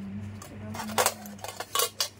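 Stainless steel nail instruments clinking against a metal tray as they are set down and picked up: a few sharp clinks about a second in, a couple more, and the loudest near the end.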